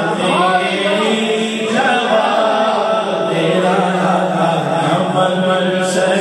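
A man's voice singing an Urdu naat, a devotional poem in praise of the Prophet, drawing out long wavering melismatic notes without clearly sung words.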